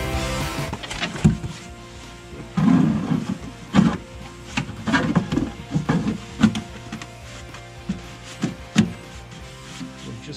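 Background music, over which come a dozen or so sharp knocks and dull bumps as a plastic fuel can is handled and pushed up into a fiberglass bracket.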